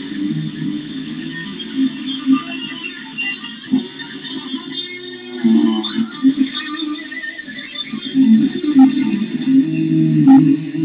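White Ibanez electric guitar played as a continuous flow of single-note lines, mostly in its lower-middle range, improvising in F#.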